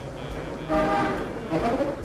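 A man's drawn-out wailing cry, voiced twice: a long held wail, then a shorter one that bends in pitch.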